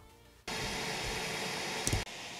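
Steam jetting through the nozzle of a 3D-printed polycarbonate impulse turbine: a steady hiss that starts about half a second in, with a faint steady tone under it and a short click just before the end.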